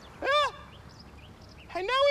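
A man's high falsetto cries into a phone: two short wails, one just after the start and one near the end, each rising then falling in pitch.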